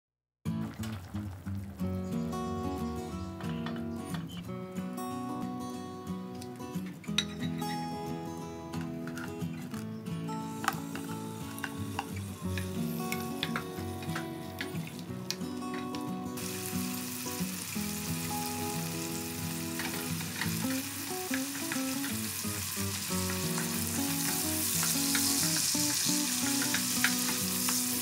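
Shrimp frying in oil in a nonstick pan, stirred with a wooden spatula, over background music. The sizzle comes in about halfway and is loudest near the end, with small scrapes and clicks from the spatula.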